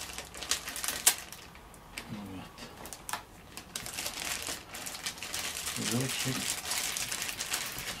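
Clear plastic packaging bag crinkling and crackling as a new computer mouse is worked out of it, with scattered sharp crackles, the sharpest about a second in.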